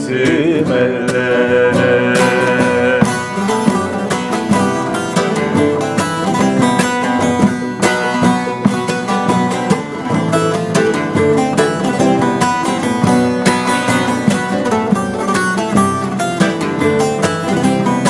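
Turkish folk music played live on an acoustic guitar and a bağlama. A man's singing ends about three seconds in, and the two instruments carry on with a busy plucked instrumental passage.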